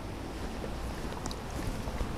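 Quiet room tone picked up by the sermon microphone: a steady low hum under an even hiss, with no speech.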